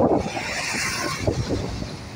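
Intercity coach pulling away, its engine rumbling, with a steady hiss for about a second early in its move.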